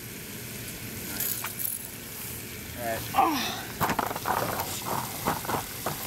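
A steady rustling hiss, then from about three seconds in a man's voice in short untranscribed utterances, with a few sharp knocks.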